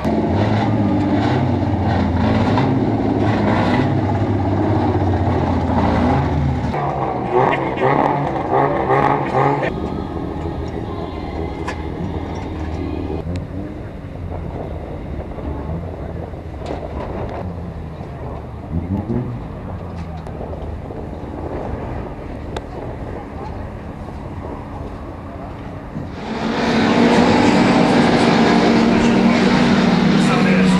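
Banger racing cars' engines running and a car driving through the pits for the first ten seconds, then quieter engine sound with one brief rev. About 27 seconds in there is a sudden switch to several race cars running loudly together on the track.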